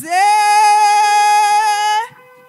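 A woman's voice sings one long held note through a microphone. The note slides up slightly as it begins, then stays steady.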